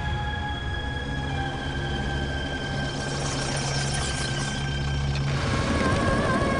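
Dramatic background score for a TV serial: a sustained synthesizer drone with steady held tones over a low rumble, entering suddenly. About five seconds in, the low rumble drops away and a new higher tone comes in.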